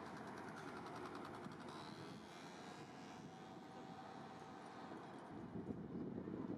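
Steady city traffic noise, with a motor scooter passing close by in the first second or so.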